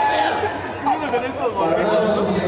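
Several people talking at once, overlapping chatter with no music playing.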